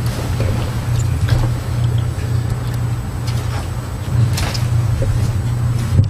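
Steady low hum of room noise, with faint rustling and a few light knocks.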